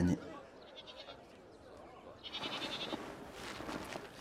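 An animal call, about a second long, starting about two seconds in, over faint background sound.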